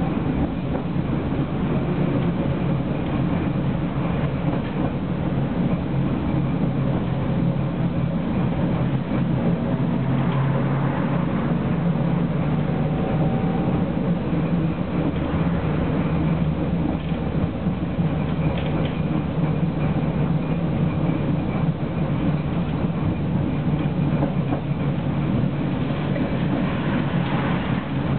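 Tram running along street track, heard from inside the car: a steady low rumble of wheels and running gear, with a faint whine rising in for a few seconds around the middle.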